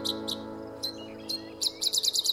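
The last strummed acoustic guitar chord of an outro tune ringing out and fading away. Birds chirp over it in quick, short, high notes that come thicker near the end.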